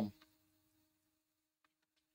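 The end of a drawn-out spoken "um", then near silence with only a faint steady hum and a few faint clicks near the end.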